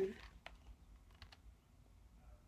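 A few faint, short clicks and taps from hands handling a hardcover picture book, held up open.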